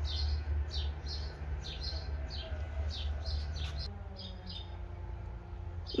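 Small birds chirping: short, quick, falling chirps about three a second, thinning out about four seconds in, over a steady low rumble.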